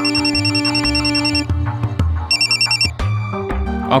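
An electronic phone ring with a fast high warble sounds twice, a long ring and then a shorter one about a second later. It plays over background score music with steady low pulses and held notes.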